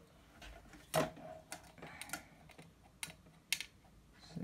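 A handful of short, sharp clicks and light knocks from a plastic ruler and a power-supply cable being moved and laid along a wooden desktop while the cable is measured.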